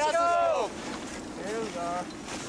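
Rescuers' voices calling out over wind buffeting the microphone, with one long falling call near the start.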